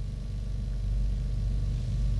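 A low, steady droning hum that slowly grows louder.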